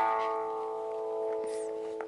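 Electric guitar chord struck once and left ringing, fading slowly.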